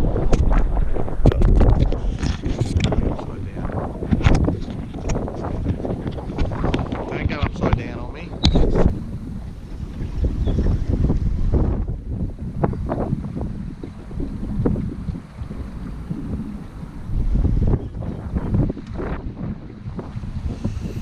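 Wind buffeting an action camera's microphone on an open fishing boat, a loud, uneven rumble, with frequent sharp knocks and clicks from handling and gear on the boat.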